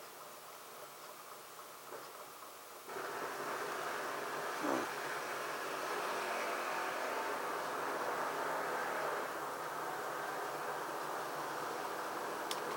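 A steady rushing, machine-like noise that starts abruptly about three seconds in and runs on evenly, with a brief falling tone about five seconds in.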